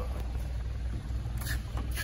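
Steady low rumble, typical of the car idling, mixed with phone handling noise, and a faint click about one and a half seconds in as the trunk is opened.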